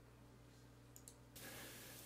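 Near silence: faint room hum, a single faint click about a second in, then a faint steady hiss begins shortly after.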